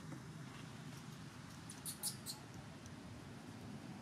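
A quick run of four or five short, high-pitched squeaks about two seconds in, typical of a baby macaque, over a steady low background rumble.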